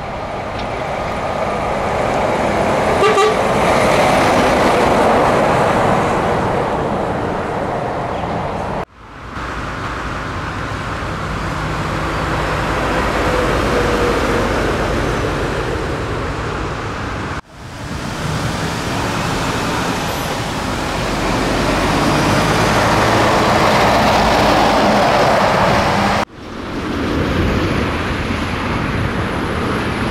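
Heavy trucks driving past on a busy road, their engines and tyres swelling in level as each goes by, in four short sections that break off suddenly. A short horn toot sounds about three seconds in.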